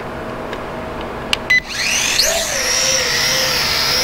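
Eachine E38 quadcopter's brushed coreless motors spinning up about two seconds in: a whine that climbs quickly in pitch, then holds steady as the drone lifts off and hovers. A couple of short clicks come just before the spin-up.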